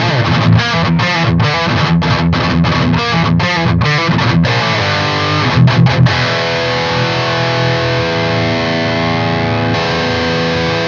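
Heavily distorted electric guitar played through a Peavey 6505 amp head with an overdrive pedal boosting it, miked at the cabinet: a tight, stop-start riff of short chugs for the first few seconds, then a chord left ringing out.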